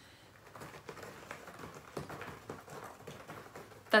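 A cat clawing at a scratching post: a quick, irregular run of rasping scratch strokes, quieter than the speech around it, starting about half a second in.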